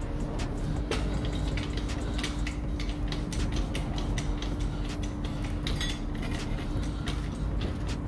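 A jack's metal cradle and shaft clicking and clinking at irregular moments as it is set under the rear suspension arm and raised against the new coil spring, over a steady low background hum.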